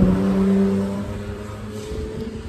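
A motor vehicle's engine going by, a steady hum that fades away during the first second or so.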